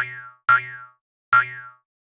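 Cartoon boing sound effect for a bouncing object, heard three times: twice half a second apart, then once more nearly a second later. Each is a short springy twang that dies away quickly.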